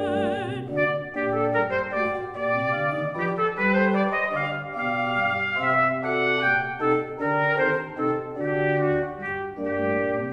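Baroque aria with a solo oboe obbligato playing a steady running melody over a basso continuo bass line. The soprano's held note ends about half a second in, leaving the instruments alone.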